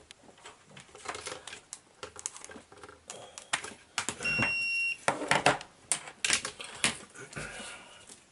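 Clicks, taps and knocks of a plastic laptop charger and its cables being handled and set down on a wooden desk, with one short, steady electronic beep about four seconds in.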